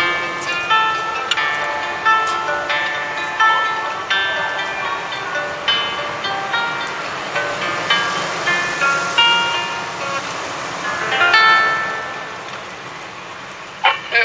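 Solo acoustic guitar playing an instrumental closing passage of picked single notes and arpeggios, ending about eleven seconds in on a final strummed chord that rings and fades away.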